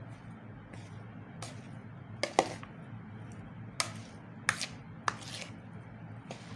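A metal fork tossing a broccoli salad in a plastic bowl: irregular clicks and taps of the fork against the bowl and vegetables, about seven in six seconds, the sharpest about two and a half seconds in.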